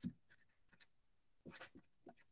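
Felt-tip marker writing on paper: a few faint, short strokes, the clearest about a second and a half in.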